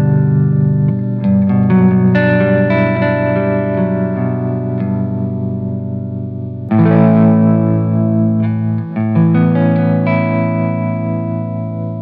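Electric guitar playing ringing chords with single notes picked over them: a plain G major chord, then a richer G major 13 voicing struck about halfway through.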